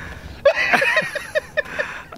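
A man laughing in a quick run of breathy "ha-ha" pulses, about six a second, starting about half a second in.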